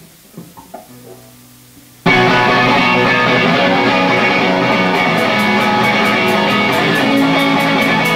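Live rock band starting a song: a few quiet guitar notes, then about two seconds in the whole band comes in at once, loud, with electric guitars, bass and drums. Regular high ticks from the drums join about five seconds in.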